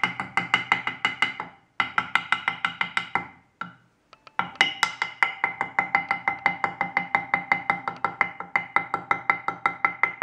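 A glass pentane thermometer tapped rapidly against a wooden board, about five or six knocks a second with a ringing tone, pausing briefly about one and a half seconds in and again for about a second near four seconds in. The tapping shakes the separated liquid column back down to rejoin the rest.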